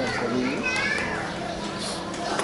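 Several voices shouting and calling out at once across a football pitch, with a high-pitched call near the middle.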